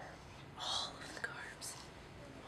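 Quiet whispered speech: a few hushed, hissing syllables.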